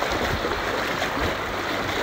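Steady rushing of a flowing creek around a kayak raft drifting downstream, with a couple of soft low thumps.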